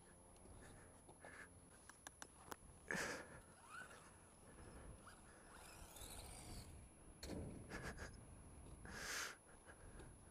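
Near silence, broken by a few faint, brief puffs of noise and a handful of tiny clicks.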